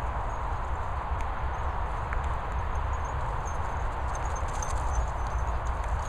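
Wind rumbling on the microphone of a handheld camera, with a continuous run of soft, quick footfalls on grass.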